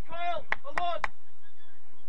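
Two short shouts from a man on a football pitch, with three sharp claps among them in the first second.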